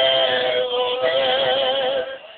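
Male voices of a Mexican trio holding one long sung note together, wavering with vibrato, over acoustic guitar accompaniment.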